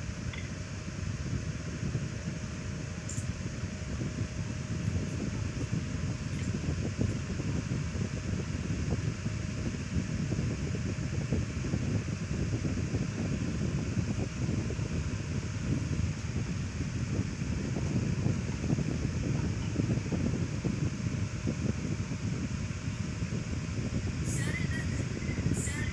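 Steady rushing noise of moving air, with a low fluttering rumble of air buffeting the microphone.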